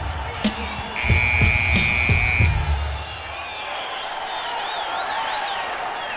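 A hip-hop beat from the DJ under a cheering crowd, with a steady electronic tone lasting about a second and a half near the start. The beat stops about three seconds in, leaving crowd noise and a high warbling tone near the end.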